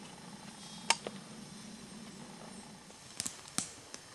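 A few sharp clicks of hand-handled gear: one loud click about a second in, a softer one just after it, and a cluster of three near the end, over a faint steady hum.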